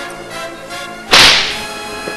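Background music with a single loud, sharp crack about a second in, dying away within half a second.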